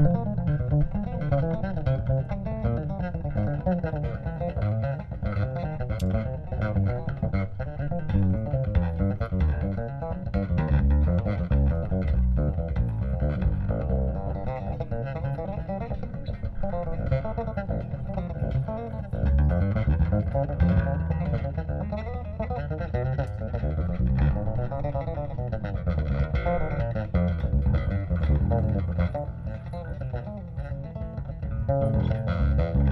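Bass guitar played live: a continuous stream of quick plucked notes, with no singing.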